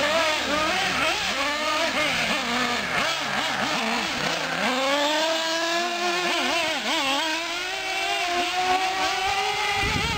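Small nitro engines of 1/8-scale Associated SC8 short-course RC trucks revving, their pitch swooping up and down quickly with the throttle. From about halfway, one engine holds a long note that climbs slowly under steady throttle before backing off near the end.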